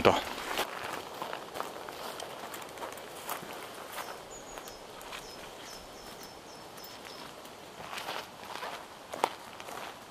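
Footsteps through dry grass and undergrowth, with twigs and brush crackling and a few sharper snaps. A faint high chirp repeats several times in the middle.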